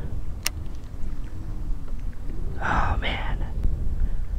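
Wind rumbling steadily on the microphone in open air. One sharp click comes about half a second in, and a short breathy, whisper-like sound comes near three seconds.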